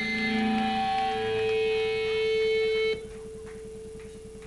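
Live band music: a loud sustained chord starts suddenly, holds for about three seconds and cuts off abruptly, leaving a quieter single held tone.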